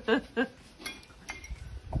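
Short hummed sounds of tasting with the mouth full, then two light clinks of a metal fork about a second in.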